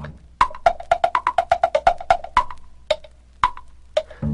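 Tick-tock percussion break on wood-block-like clicks: a quick swinging run of alternating higher "tick" and lower "tock" knocks, thinning to a few scattered clicks in the second half.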